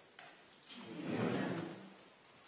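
A congregation saying "Amen" together as a spoken response, heard as a soft, blurred blend of many voices in a reverberant sanctuary. A short click comes just before it.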